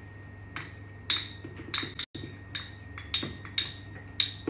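A small bowl knocked against the mouth of a blender jar to empty onion powder into it: a series of sharp clinks and taps, about eight spread irregularly through the few seconds. The sound cuts out completely for an instant about halfway.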